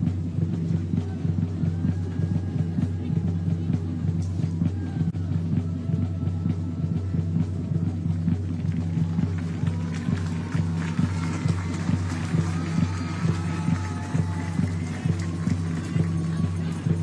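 Music with a steady low bass and a regular beat; a higher melody comes in about ten seconds in.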